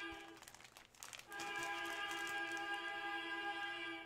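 Clear plastic bag around a jersey crinkling briefly about a second in as it is handled. A faint, steady held musical note sounds under it, fading at the start and then returning and holding for the last three seconds.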